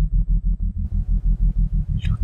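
Background electronic music: a low synthesizer bass pulsing in a rapid, even rhythm.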